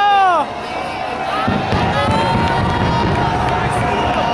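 Crowd cheering and shouting at a fireworks display, with one voice's loud falling shout in the first half-second. Beneath it runs the low rumble of the firework bursts.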